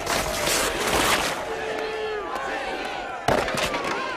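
A loud crash of a wooden table and clay pots being smashed, with clattering in the first second or so. Voices and shouts follow, and there is a sharp bang a little past three seconds in.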